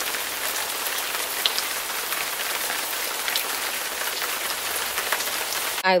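Shower running: a steady spray of water with scattered drop ticks, cut off suddenly near the end.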